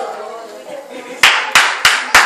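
Three sharp, loud hand claps in quick even succession, about three a second, starting a little over a second in, after a voice trails off.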